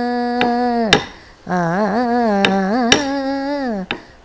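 A woman singing a Carnatic kirtanam, holding long notes with ornamented turns and breaking for breath about a second in. A stick strikes a wooden beating block (tattu palagai) in sharp paired taps, about half a second apart, keeping the dance rhythm.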